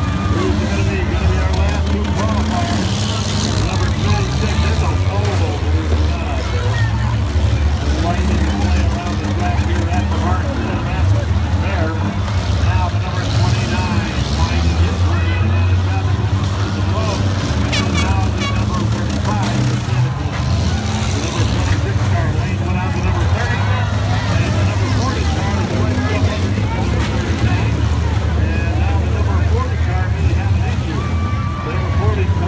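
Engines of small four-cylinder and V6 demolition derby cars running and revving together in a low, steady rumble, over crowd chatter, with a few sharp knocks a little past the middle.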